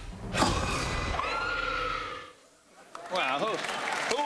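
Horror-film soundtrack: a low rumble breaks into a sudden loud shriek about half a second in, its pitch sliding up and holding for over a second. It cuts off into a brief silence, and a voice begins about three seconds in.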